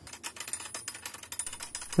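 Rapid, irregular clicking and ticking from a wooden torsion-catapult mechanism being worked by hand.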